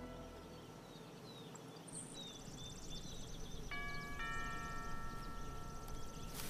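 Two-note chime doorbell sounding a ding-dong. The first note strikes about three and a half seconds in and the second half a second later, and both ring on steadily.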